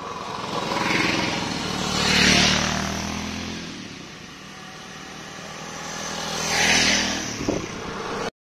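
Motorcycles riding past one after another, their engine sound swelling and fading twice: loudest about two seconds in and again near seven seconds.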